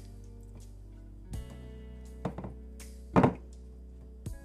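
Soft background music with a few short thumps as hands pat seasoning onto raw pork chops in a glass dish; the loudest thump comes about three seconds in.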